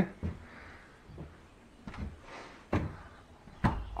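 A few scattered light knocks and thuds of a wooden board shelf hung on ropes being touched and moved by hand. The two loudest knocks fall in the second half.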